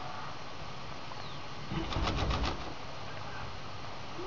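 Horse snorting: a short fluttering blow through the nostrils, about two seconds in and lasting under a second.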